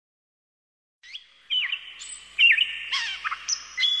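Birds chirping and singing, starting about a second in: a quick string of short, sweeping whistled calls that grows busier toward the end.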